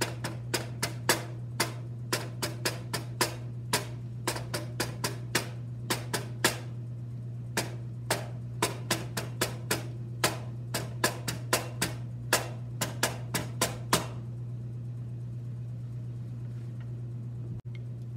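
Wooden drumsticks tapping out a snare drum exercise of mixed quarter and eighth notes, stopping about fourteen seconds in. A steady low hum runs underneath.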